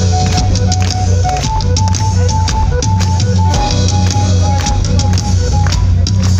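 Live band music played loud through a festival PA, with heavy bass and a steady drum-kit beat under a short repeating melody line, and no singing.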